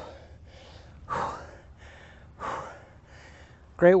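A man breathing hard after a high-intensity workout, with heavy, hissy breaths roughly every second, the strongest two about a second and two and a half seconds in. He starts speaking near the end.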